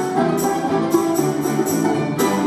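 A folk-instrument ensemble playing: plucked domras and balalaika with accordion and piano, in a steady rhythm with regular bright strokes on the beat.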